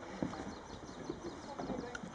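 Footsteps on a footbridge deck: faint, irregular knocks.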